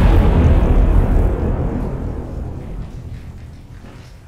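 The rumbling tail of a cinematic explosion-style boom effect, loud at first and dying away steadily over about four seconds, the highs fading first and a deep rumble lasting longest.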